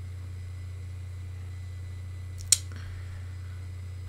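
Steady low hum of room tone, with a single sharp click about two and a half seconds in.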